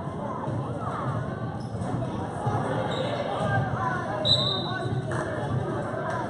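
Gymnasium crowd chatter during a youth basketball game, with a basketball bouncing and feet on the court floor. A short high tone sounds about four seconds in.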